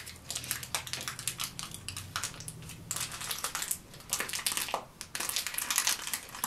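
Thin plastic sheeting crinkling and crackling as it is pulled off a clay surface and bunched up by hand, a quick irregular run of small crackles.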